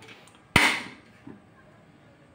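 A gas stove burner being lit: one sharp click from the knob's igniter about half a second in, followed by a brief fading rush.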